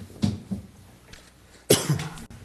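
A man coughing: two short coughs in the first half, then a louder, harsher one near the end.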